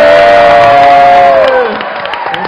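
Studio audience cheering, with voices holding one long shout that stops near the end.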